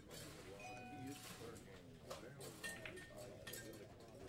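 Faint background murmur of voices with music playing.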